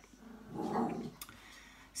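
A pet dog in the room makes one short, low vocal sound lasting under a second.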